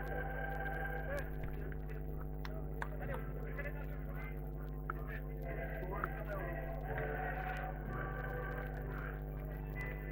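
Faint voices calling out on the pitch, heard over a steady low electrical hum.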